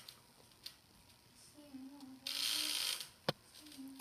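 Mostly quiet, with a faint voice murmuring in the background, a short burst of hiss a little past two seconds in, and a single sharp click near the end.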